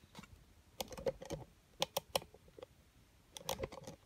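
Dry grass and leaves crackling and snapping in three short bursts, as someone moves through dense overgrown vegetation.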